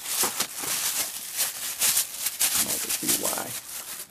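Thin plastic bag crinkling and rustling in many quick crackles as it is handled and pulled open.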